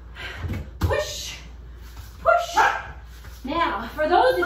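A dog barking and yipping, three short pitched barks spaced a little over a second apart.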